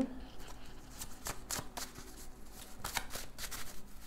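A deck of tarot cards being shuffled by hand: a quick, irregular run of soft card clicks and riffles.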